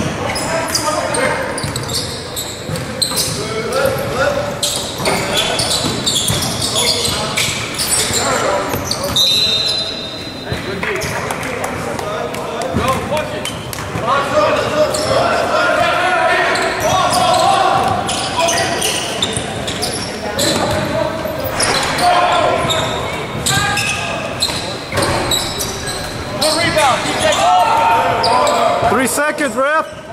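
A basketball game in a large echoing gym: a ball bounces on the hardwood floor, and players and benches shout. A short, steady, high whistle sounds about ten seconds in, and sneakers squeak on the floor near the end.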